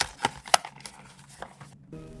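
A few short, sharp clicks or taps, four in all, the loudest about half a second in, with a moment of dead silence near the end.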